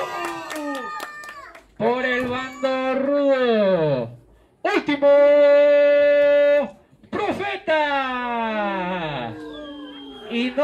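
A man's voice making long, drawn-out shouted calls: a ring announcer stretching out wrestlers' names during introductions. The calls come in three or four sweeps, one held at a steady pitch for about two seconds midway, the others falling in pitch at their ends.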